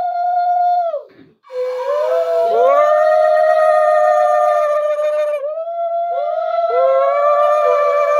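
Several women ululating (Bengali ulu), long high-pitched held calls that overlap one another at slightly different pitches, with a brief break about a second in. This is the auspicious call that accompanies a Bengali blessing ritual.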